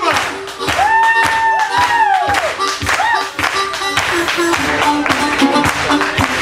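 Acoustic blues band playing, with steady rhythmic hand clapping over the beat and a voice calling out about a second in.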